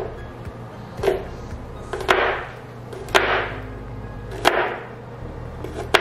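Chef's knife chopping garlic cloves on a plastic cutting mat: about six sharp chops roughly a second apart, most followed by a short rasp.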